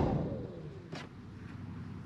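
Rear passenger blower heater's fan spinning down, its whine falling in pitch and fading over about a second. A single faint click comes about a second in.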